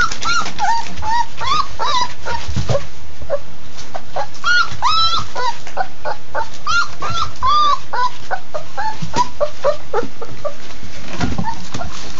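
Labrador retriever puppies whimpering and whining over and over in short, high, rising-and-falling squeals as they eat. Wet clicks and smacks of the puppies eating soft food from a bowl run underneath.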